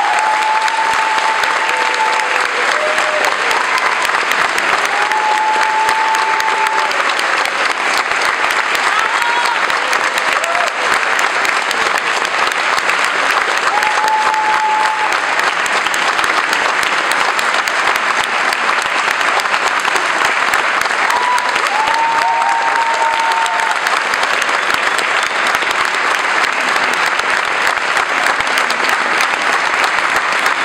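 Concert audience applauding steadily at the end of a choir song, with a few short held calls rising over the clapping.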